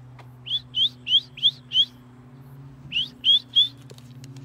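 A person whistling to call a dog: five quick rising whistles, a pause of about a second, then three more.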